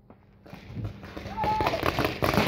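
Paintball markers firing: a rapid string of sharp pops that starts about half a second in and grows denser toward the end.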